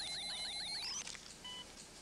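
Science-fiction medical device sound effect: a fast electronic warble of about eight rising chirps a second over a wavering hum. It sweeps up in pitch and cuts off about a second in, followed by a single short electronic beep.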